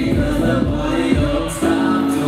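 Live concert music played loud through a PA, a backing beat with voices singing over it. About one and a half seconds in, the deep bass drops out as the song moves into a new section.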